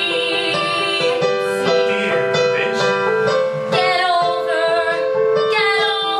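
A woman singing a song with piano accompaniment, her held notes wavering over steady chords.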